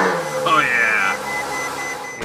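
2015 Ferrari F12's V12 catching on a cold start, flaring up in a quick rising rev about half a second in, then falling back to a steady high idle. A dashboard chime beeps steadily over it.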